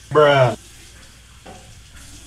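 A short, loud vocal exclamation in the first half-second, then the steady hiss of a bathroom tap running into the sink.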